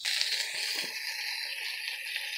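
Shredded cabbage frying in bacon grease in a hot pan: a steady sizzle, with a couple of faint small ticks.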